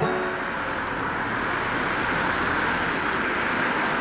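Road noise from a vehicle driving along the road: a steady rush of tyres and engine that swells a little in the middle and then eases off.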